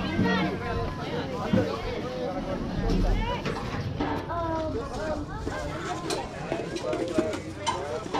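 Several children's and adults' voices talking and calling over one another, none close enough to make out, with a few sharp clicks.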